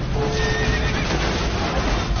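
A horse whinnying over loud dramatic music, with a wavering call early on.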